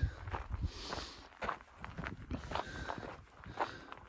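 A hiker's footsteps on a narrow rocky dirt mountain trail, a series of short irregular steps.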